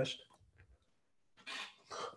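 Short, breathy, effortful vocal bursts from a man with cerebral palsy straining to get a word out, starting about one and a half seconds in after a brief pause.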